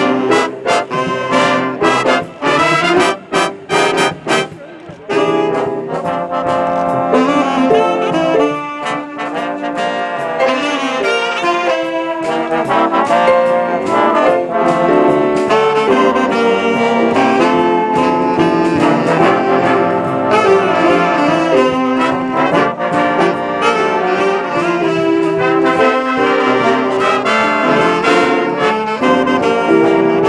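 Jazz big band of saxophones, trumpets and trombones playing live. The first few seconds are short, punchy ensemble hits with gaps between them, and then the full band plays on without a break.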